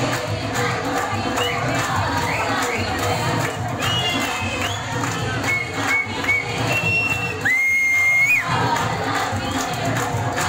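Audience cheering and shouting, with several shrill whistles, one held for nearly a second late on.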